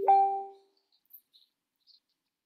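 Two-note electronic notification chime: a low tone steps up to one about an octave higher, which fades out within about half a second.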